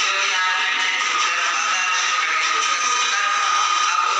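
A woman singing into a microphone over a loudspeaker, with music.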